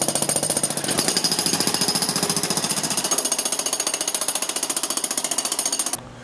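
Jackhammer (handheld demolition hammer with a chisel bit) breaking up a basement concrete floor slab, hammering rapidly and evenly without a break. The slab is wet, with groundwater pushed up through the broken area by hydrostatic pressure.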